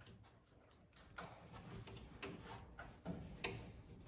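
Faint, scattered clicks and light taps as hands work at the door-frame fittings of a stainless-steel convection oven, about four in all.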